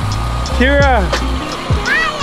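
Background music: a song with a singing voice over bass and a steady beat.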